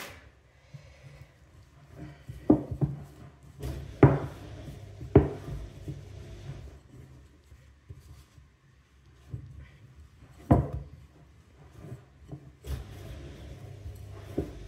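Bread dough being kneaded by hand in a glass bowl on a wooden table, with a few sharp knocks of the bowl and hands, the loudest about 4, 5 and 10 seconds in. A dishwasher runs underneath as a low steady hum.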